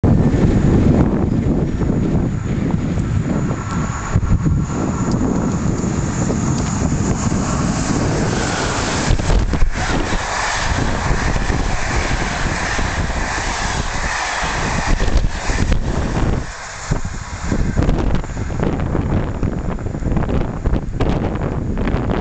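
Passenger train hauled by a ČD class 163 Škoda electric locomotive passing at speed, its coaches rolling by with a steady rumble, under heavy wind buffeting on the microphone.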